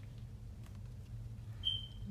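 A steady low hum, with one short high-pitched beep near the end.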